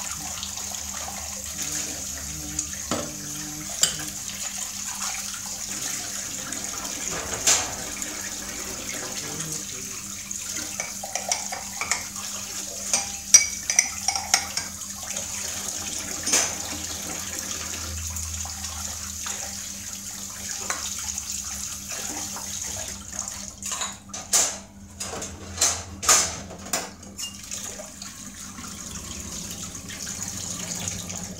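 Tap water running steadily into a stainless steel sink as dishes are washed by hand, with scattered clinks of ceramic bowls and plates against each other and the sink. For a few seconds near the end the stream breaks into uneven splashing.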